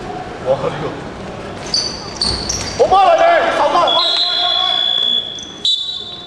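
Referee's whistle in a sports hall: one long steady blast about four seconds in, then a short one near the end, over players' shouts.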